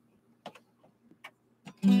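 Eastman hollow-body archtop guitar played unplugged: a few faint clicks on the strings, then a strummed chord rings out just before the end.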